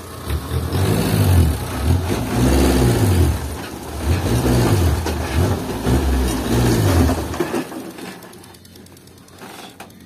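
Old Toyota Dyna dump truck's engine revved up and down about six times in quick succession while the fully loaded truck unloads its fill dirt, then dropping back to a quiet idle about seven and a half seconds in.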